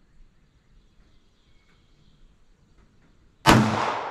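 A single .380 ACP pistol shot from a Ruger LCP with a 2.75-inch barrel, fired about three and a half seconds in after a quiet lead-up; the sharp report rings out and fades over about a second.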